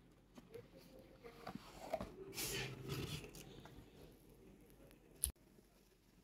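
Cardboard packaging being handled: a few light taps and scrapes, then a brief sliding, rustling scrape about two seconds in, and one sharp click near the end.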